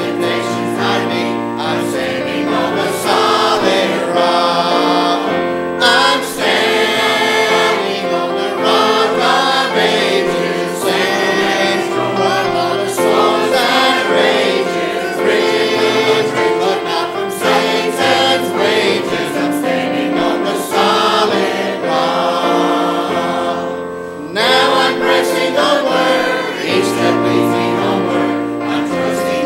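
Church choir singing a hymn together in sustained, steady phrases, with the song leader's voice among theirs.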